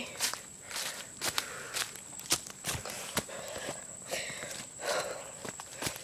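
Footsteps on a forest floor, crunching through dry leaf litter and twigs at a walking pace of about two steps a second.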